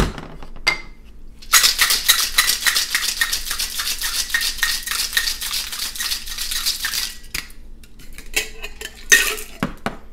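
Ice rattling hard inside a Boston shaker, a steel tin seated over a mixing glass, shaken fast for about six seconds after a sharp clink as the tin is knocked onto the glass at the start. A few knocks and clinks near the end as the tin and glass are handled apart.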